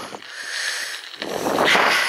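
A cyclist breathing hard, with one long breathy rush starting a little after a second in, over a fainter steady hiss while riding along a bumpy gravel track.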